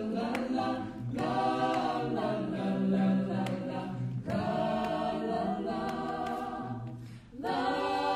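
Vocal jazz ensemble singing several voice parts in harmony, in held phrases broken by short breaths about a second in, about four seconds in and just after seven seconds.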